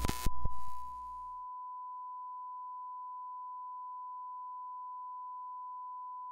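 A steady, pure electronic test tone, a single unwavering beep-like note that holds throughout, as used in a retro-TV sign-off effect. For about the first second it sits under a burst of static-like noise with a couple of sharp clicks, which fades away.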